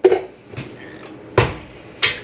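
Two short clunks, one right at the start and a louder, deeper one about a second and a half in: a stand mixer and its stainless-steel bowl being handled and set up.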